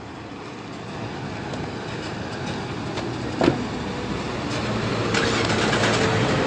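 A motor vehicle's engine running, growing steadily louder across the few seconds, with a single short knock about three and a half seconds in.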